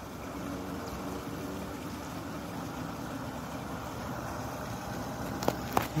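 Steady rushing of river water flowing past, with two short clicks near the end.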